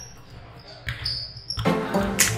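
A basketball bouncing on a hardwood gym floor, two sharp bounces about a second apart. Louder music or voices come in near the end.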